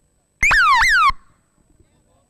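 A loud, shrill tone that falls sharply in pitch twice in quick succession, lasting well under a second.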